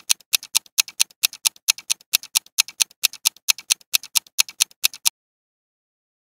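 Countdown-timer ticking sound effect: rapid clock ticks, about four to five a second, alternating louder and softer. It stops abruptly about five seconds in.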